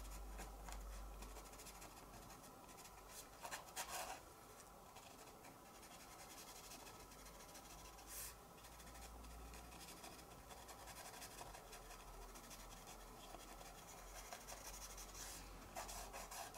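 Faint scratching of a pastel pencil shading on textured watercolour card, briefly louder about four seconds in, over a steady low hum.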